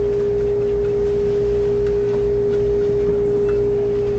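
A loud, steady single-pitched hum that holds one pitch without a break, over a low rumble.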